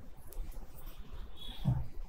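Faint rustling and handling of a silk tissue saree as it is picked up from a stack and unfolded, with a soft low thud near the end.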